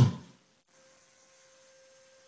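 A man's voice trailing off at the very start, then near silence in a speech pause, with only a faint steady hum tone in the broadcast audio.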